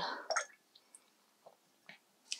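Near silence with a few faint, short clicks spread across about two seconds.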